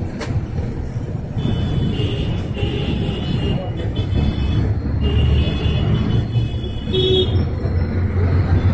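Bus engine and road noise heard from inside the moving bus: a steady low rumble.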